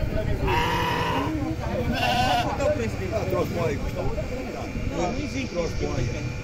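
Livestock bleating twice: a steady bleat about half a second in, then a shorter wavering, quavering bleat about two seconds in, over a murmur of many people talking.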